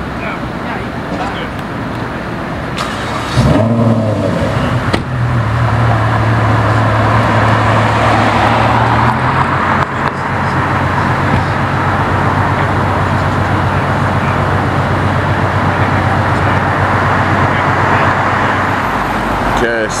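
Ferrari F12 TDF's naturally aspirated V12 idling, a steady low hum that comes in suddenly and louder about three and a half seconds in.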